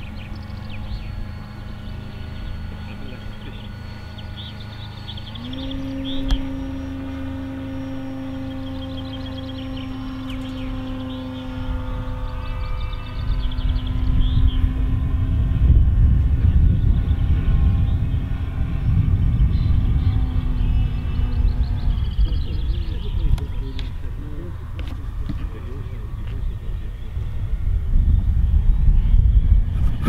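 Electric motor and propeller of a radio-controlled model aircraft whining steadily overhead, its pitch stepping up about five seconds in as the throttle is opened, then fading out in the second half. A low, irregular rumble of wind on the microphone grows louder from about midway and becomes the loudest sound.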